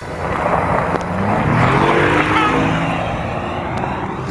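Car driving fast on a gravel road: loud tyre and road noise, with the engine note rising as it accelerates about halfway through.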